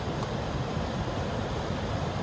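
Steady low rumble of car engine and road noise heard inside the cabin.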